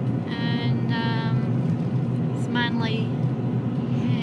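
Steady road and engine noise of a moving car, heard from inside the cabin. A person's voice makes short drawn-out sounds twice in the first second and a half and once about three seconds in.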